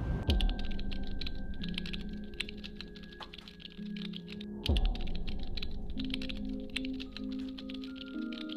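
Rapid, irregular keyboard-typing clicks used as a sound effect for on-screen text being typed out, over sustained ambient music chords. A deep boom hits at the start and again just before five seconds in.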